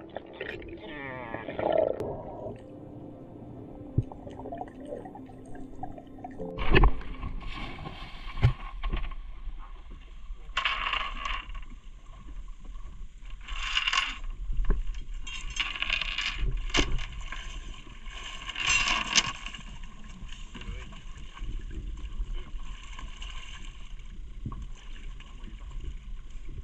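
Muffled underwater sound, then a sharp knock about seven seconds in. After it, water sloshes and splashes against the side of a small boat in repeated surges a few seconds apart, over a low rumble of wind on the microphone.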